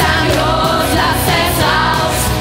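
A live pop band with saxophone, guitars, bass, drums and keyboards plays a musical-theatre number with a steady beat. A group of young voices sings along as a chorus.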